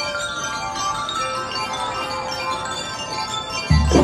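Marching bell lyres of a drum and lyre corps playing a ringing melody with the drums silent; heavy drum beats come back in just before the end.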